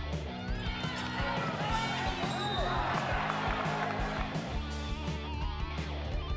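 Background instrumental music: a guitar-led track over a steady bass line, playing evenly throughout.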